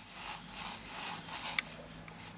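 Graphite pencil scratching on drawing paper in a run of short strokes, the sound swelling and fading a few times a second.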